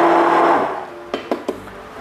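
Immersion blender running in a stainless steel saucepan of thin green chili-mint sauce, with a steady hum that dies away about half a second in. A few light knocks follow about a second in.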